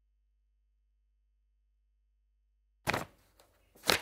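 Dead air in a TV broadcast: almost three seconds with nothing but a faint steady low hum. Then a sudden click-like burst as the studio sound cuts back in, followed by faint room hiss and another short burst just before the end.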